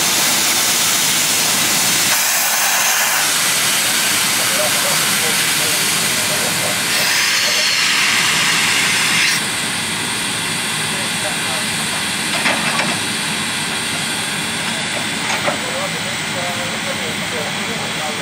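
Steam locomotive venting steam in a loud, steady hiss as it rolls slowly past, the hiss easing a little about nine seconds in.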